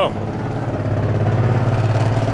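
Street traffic: a vehicle engine running nearby with a steady low drone over general road noise.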